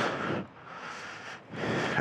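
Outdoor background noise, a soft hiss with no clear pitch. It dips in the middle and swells again near the end.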